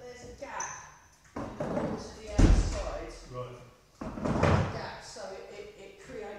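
A heavy hall door being shut: two loud thuds about two seconds apart, echoing round a large hall.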